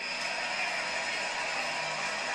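Steady, even background noise, like a hiss, with no voices and no distinct events.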